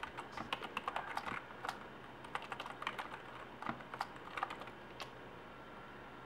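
Computer keyboard being typed on: quick irregular key clicks for about five seconds, then stopping.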